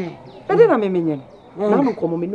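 A woman's voice making two short drawn-out exclamations, the first sliding up and then down in pitch, the second shorter, near the end.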